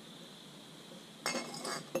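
A brief clatter of small hard objects clinking together, starting a little over a second in and lasting about half a second, ending in a sharp click.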